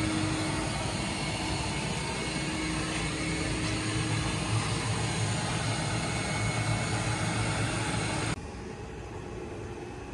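Vacuum motor running steadily with a rush of air and a low hum, drawing air out from behind a new vinyl pool liner to pull it into place. It cuts off sharply near the end, leaving a quieter steady noise.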